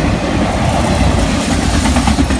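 Freight train of enclosed autorack cars passing close by: a steady loud rumble and rattle of steel wheels on the rails, with a few faint clicks near the end.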